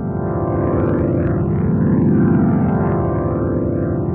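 Nord Electro 5D organ holding a full chord through a Neo Instruments Ventilator II rotary cabinet simulator, its input driven hot so the pedal's overload light just comes on. The chord is loud and steady, with a rotary swirl sweeping through it about every second and a half.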